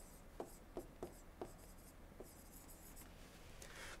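Faint taps and light strokes of a stylus writing on an interactive display panel, with a few soft ticks in the first second and a half.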